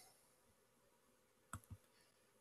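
Near silence broken by two quick computer mouse clicks about one and a half seconds in, a tap apart.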